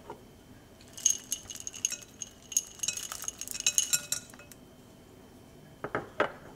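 Small ceramic bowl clinking rapidly and ringing lightly as lingonberries are shaken and scraped out of it, a dense run of clinks lasting about three seconds from a second in.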